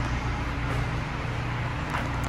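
Steady machine hum with an even hiss, the running background noise of an indoor RV detail shop, with no distinct events.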